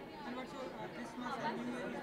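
Indistinct voices and crowd chatter, with people talking over one another.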